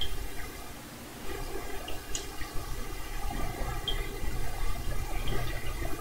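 Portable reel-to-reel tape recorder switched on, giving a steady hum and hiss, with a couple of faint clicks as its controls are pressed.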